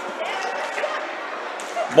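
Live roller hockey play in a sports hall: a steady din of quad skates on the wooden rink floor, with a few faint clacks of sticks on the ball and distant voices in the hall.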